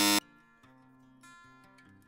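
A brief, loud buzzer sound effect marking a mistake right at the start, then quiet acoustic guitar background music.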